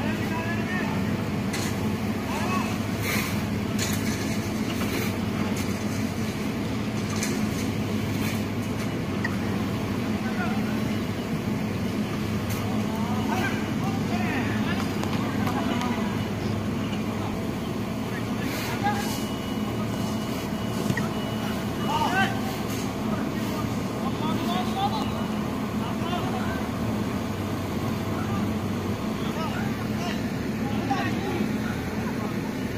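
Players calling and shouting across an outdoor football game, with occasional sharp ball kicks, over a steady low hum.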